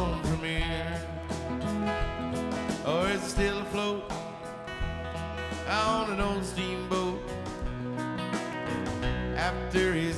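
Live country-rock band music: strummed acoustic guitar over bass and drums, with a lead line that slides between notes.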